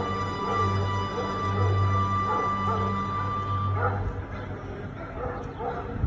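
A dog barking repeatedly in short calls, over a steady droning music bed that stops about four seconds in.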